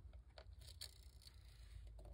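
Faint rustling with a few light ticks and scrapes as hands handle a paper craft tag and the small metal piece fixed to it, over a low steady room hum.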